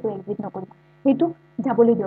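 A man talking, and in his short pauses a faint, steady low electrical hum can be heard.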